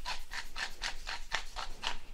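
Pepper mill twisted by hand, grinding peppercorns in a quick run of rasping strokes, about five a second.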